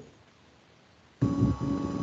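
Near silence for about a second, then a steady droning tone with choppy noise beneath it cuts in suddenly over the video-call audio.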